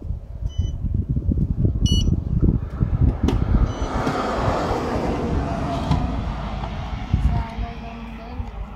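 Self-service fuel kiosk's touchscreen beeping as it is pressed: two short electronic beeps about a second and a half apart. Under them runs a loud, uneven low rumble, and a rushing noise swells and fades in the middle.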